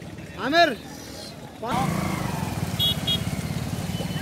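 A motorcycle engine running close by, its steady low pulsing coming in suddenly about two seconds in, with short voice calls over it.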